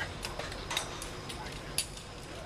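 Metal rope-rescue hardware clinking during a stretcher lower: about four sharp clicks, the loudest near the end, over faint reverberant voices and low room rumble.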